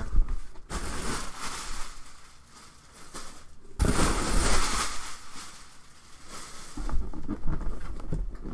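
Plastic packing wrap rustling and crinkling as it is pulled out of a cardboard shipping box, with a louder surge of crinkling a little under four seconds in.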